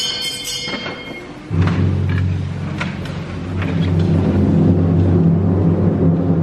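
A sustained timpani roll that starts suddenly about a second and a half in and carries on steadily: the drum fanfare that accompanies the unveiling of the Black Madonna icon at the start of mass. High ringing tones fade away in the first second.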